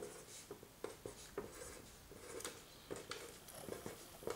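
Mechanical pencil writing on paper on a drawing board: faint scratchy strokes and a scatter of short taps as small marks are made.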